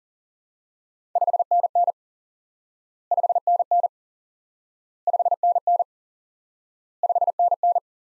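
Morse code '5NN' sent four times at 40 words per minute as a single steady beeping tone, each group of dits and dahs under a second long and the groups about two seconds apart. 5NN is the cut-number form of the 599 signal report used in contacts.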